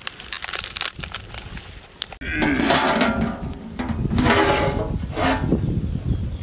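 Open wood-and-dry-leaf fire crackling with many small sharp pops. After about two seconds it gives way to a louder run of wavering, pitched sounds of unclear source.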